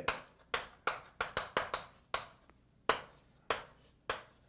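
Hand-writing strokes on a writing surface: an irregular run of about a dozen short, sharp taps and scratches, roughly three a second.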